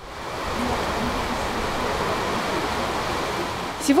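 Steady hiss of falling rain, fading in at the start and holding evenly.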